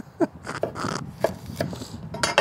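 Kitchen knife cutting small chillies on an end-grain wooden chopping board: a quick, slightly uneven run of blade knocks on the wood, about three a second.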